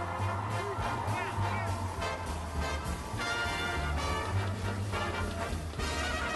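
Music with a steady, continuous bass line under a busy upper part.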